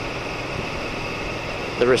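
Steady wind and running noise of a cruiser motorcycle riding along at a constant cruising speed, an even rush with no changes in pitch.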